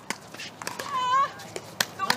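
A short, high-pitched, voice-like cry about a second in, followed by a single sharp crack of a pickleball paddle striking the ball near the end.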